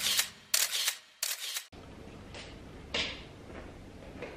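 Camera shutter sounds: a short snap about half a second in and another about a second and a half in, just after the intro music stops. Then faint room tone with a couple of soft clicks.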